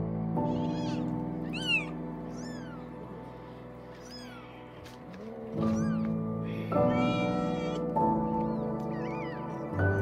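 Newborn kittens mewing: thin, high-pitched cries that fall in pitch, about half a dozen short ones and a longer wavering one around seven seconds in. Soft, slow background music runs under them.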